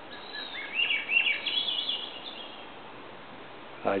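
Juvenile Cooper's hawk calling: a run of short, high whistled notes for about two seconds, the notes stepping up in pitch as they go.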